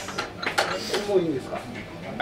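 Speech: surprised voices reacting in conversation, with a short exclamation about half a second in.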